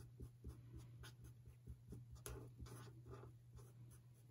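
Faint strokes of a Stampin' Blends alcohol marker tip scratching back and forth on cardstock as a small area is coloured in, a few strokes a second, over a low steady hum.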